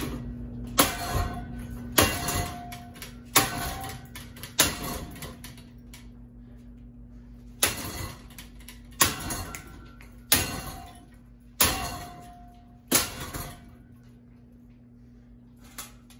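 A metal pole striking a hanging ceiling fan's metal motor housing nine times. Each hit is a sharp clang with a short metallic ring, roughly one every second and a half, with a pause of about three seconds after the fourth.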